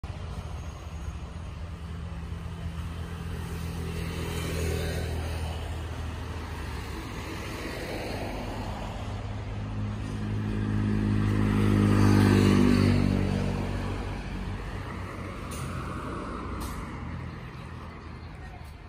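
Motor vehicle engines from passing road traffic: a steady low drone, with one vehicle growing louder, peaking about twelve seconds in, then fading away.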